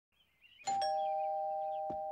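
Two-note doorbell chime: a higher 'ding' and then a lower 'dong' a moment later, both ringing on and slowly fading. A click comes near the end.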